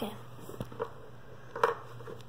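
Small handling clicks and taps over a low, steady hum, the loudest tap about one and a half seconds in.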